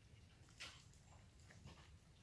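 Faint soft clicks and smacks of cats chewing and licking wet food off plates, the clearest about half a second in, over near silence.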